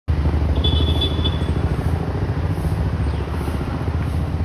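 A motor vehicle engine running close by, a steady low rumble with a fast flutter. A short, thin high-pitched chirp sounds about half a second in.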